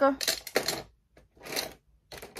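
Light clattering and rustling of craft supplies on a tabletop as someone rummages for a marker, in two short spells with a brief pause between.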